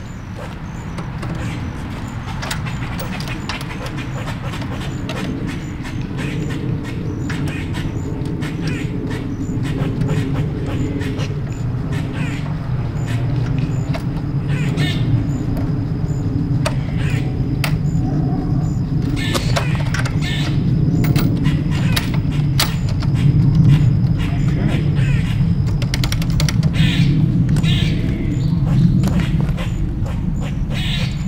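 Irregular clicks and taps of hand tools and small metal parts as hex bolts are fitted into a motorcycle's steering-damper bracket, over a steady low drone that grows slowly louder.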